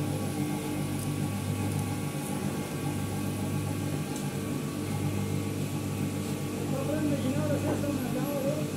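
Steady low mechanical hum of workshop machinery, with a voice faintly heard near the end.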